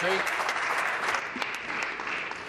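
Members of a legislature applauding: a steady wash of hand clapping that eases off a little toward the end.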